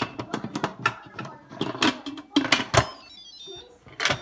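Instant Pot Duo lid set on and twisted shut: plastic and metal clatter and clicks for about three seconds, then a short electronic chime tune near the end, the cooker's signal that the lid is closed.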